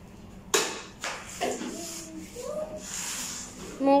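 A single sharp click about half a second in, followed by faint voices.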